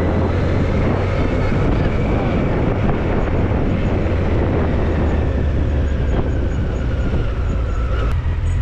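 Honda X4 motorcycle's 1284 cc inline-four engine running steadily while riding at street speed, with a dense, even rush of engine and road noise.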